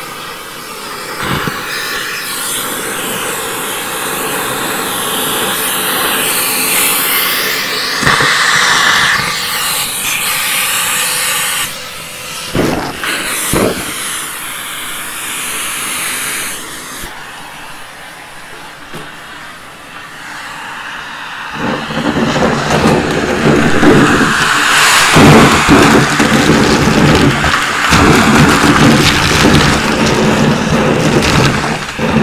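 Numatic Henry tub vacuum cleaner running, its hose and wand sucking at a pile of pennies and small colored pieces, with occasional clicks of pieces being pulled in. About two-thirds of the way through, a loud dense clatter sets in as coins and pieces rattle up the hose.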